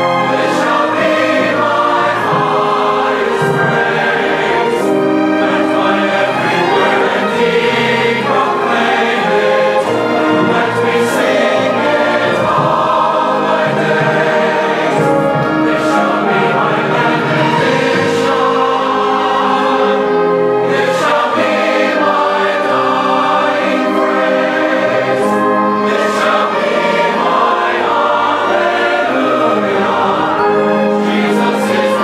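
Large church choir singing a hymn with orchestra accompaniment.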